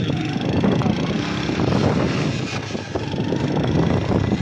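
A running vehicle engine mixed with wind buffeting the microphone, as heard from a moving vehicle. The sound is steady and rough, with constant flutter and no clear pitch.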